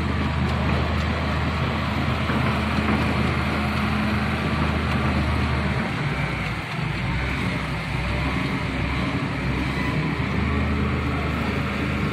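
Diesel engine of a Volvo wheeled excavator running with a steady low hum while the machine turns and moves, its pitch shifting a little about halfway through.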